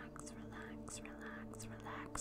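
A woman whispering softly close to the microphone, ASMR-style, the words breathy and unvoiced with repeated short hissing "s" sounds.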